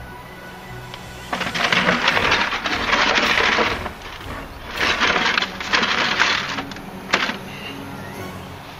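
A just-caught sheepshead thrashing in a bucket: two long bursts of splashing and rattling about a second and five seconds in, then a single knock, over background music.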